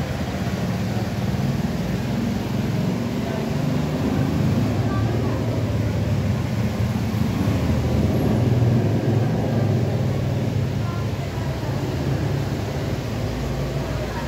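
Steady low mechanical hum of a running refrigeration unit on a commercial ice cream machine, swelling a little in the middle.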